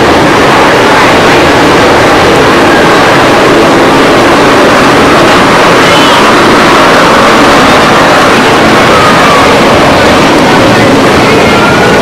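Loud, steady rushing noise with faint voices mixed in.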